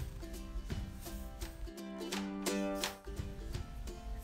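Background music: a light tune of plucked-string notes, briefly dropping out about three seconds in.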